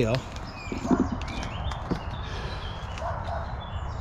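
Footsteps on dry leaf litter and twigs, with scattered crackles, and a few bird chirps in the background.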